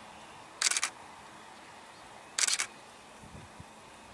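Camera shutter firing in two short bursts of rapid clicks, a little under two seconds apart.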